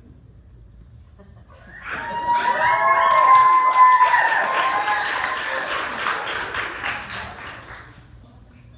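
Audience clapping and cheering with high whoops, starting about two seconds in, peaking soon after, and dying away near the end.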